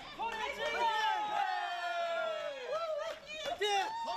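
People's voices calling out in long, drawn-out shouts whose pitch slowly falls, typical of cheering runners on.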